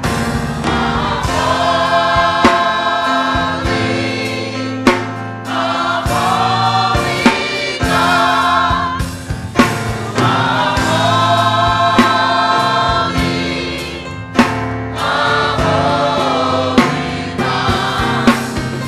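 Gospel choir singing with a church band of organ, bass guitar and drum kit, with sharp drum hits every couple of seconds.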